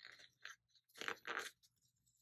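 Faint paper crinkling as a planner sticker is peeled up off the page and pressed back down: a short rustle at the start, then a longer, louder one about a second in.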